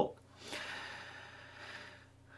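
A person's long, audible breath close to the microphone: a soft rush of air starting about half a second in and slowly fading away.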